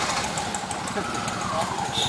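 A vehicle engine idling steadily close by, under indistinct voices.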